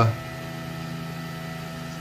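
A steady low hum with a few faint, unchanging tones above it and no change in pitch or rhythm.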